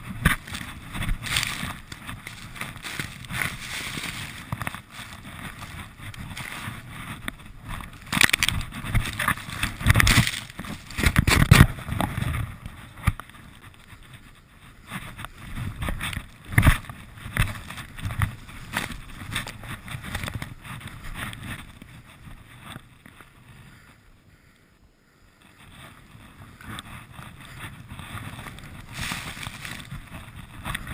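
Wind buffeting the microphone and skis hissing through deep powder snow during a fast off-piste descent, rising and falling in irregular surges, with a quieter lull about three-quarters of the way through.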